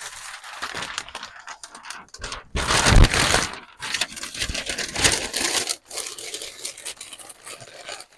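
A large white wrapping sheet rustling and crinkling as it is handled and packed into a cardboard box. The noise is loudest about three seconds in, with a thump.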